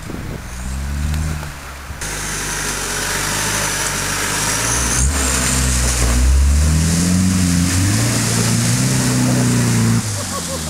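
Off-road 4WD SUV engine revving, its pitch rising and falling repeatedly and growing louder as the vehicle drives through a muddy, water-filled rut.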